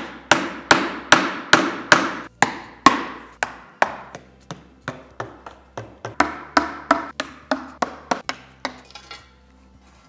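Hammer tapping plastic wedges into the seam of an aluminium battery box to pry its cover off, a steady run of sharp blows at about two to three a second. The blows stop about a second and a half before the end.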